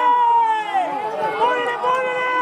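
Several people shouting and calling out over one another, with long held yells, as horses gallop past; hoofbeats on the dirt track run underneath the voices.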